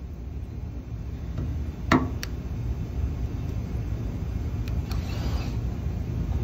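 A micro spot dent-repair welder with a rocking foot working a car body panel: a sharp metallic click about two seconds in, a lighter one just after, over a steady low rumble.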